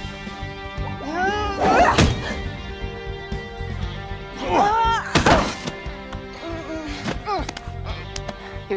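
Fight sound effects: grunts and cries of effort from two sparring fighters, each burst ending in a sharp punch or body-blow hit, over steady background music. There are two main exchanges, a little over a second in and around five seconds in, and lighter cries and knocks near the end.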